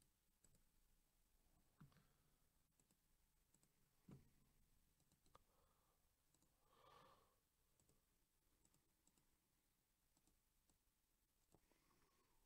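Near silence: room tone with a few faint, sharp clicks.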